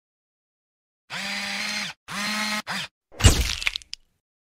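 Logo sting sound effect. About a second in come three buzzy electronic tones at one steady low pitch, the last one short. Then comes a sharp hit with a deep boom and a crackly tail, the loudest part, with a tiny blip just after.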